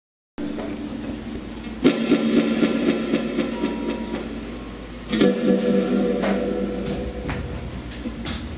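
Live shoegaze/noise band: effects-laden electric guitars and bass hold a droning chord, with big chords struck about two seconds in and again around five seconds.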